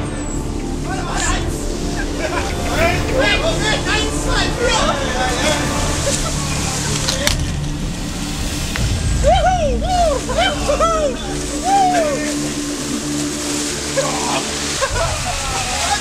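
A group of people's voices calling out and chatting, with several rising-and-falling shouts about nine to twelve seconds in, over the steady rush of a small stream.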